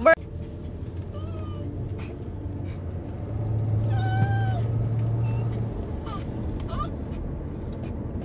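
A small dog whining in a few short, high-pitched whimpers, the clearest about halfway through, over a low steady hum.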